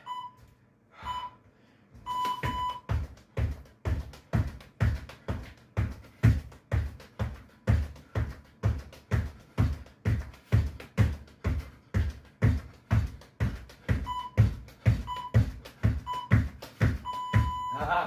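An interval timer beeps twice, then gives a long tone. After that comes a steady run of jump knee tucks: feet thud on the floor a little over twice a second for about fifteen seconds. Near the end the timer beeps three times and then gives a long tone as the set ends.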